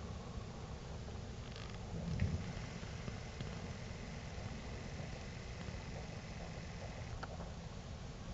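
Steady low night-time rumble of distant surroundings, with a dull thump about two seconds in and a short faint crack near the end. A thin faint steady tone holds for several seconds in between.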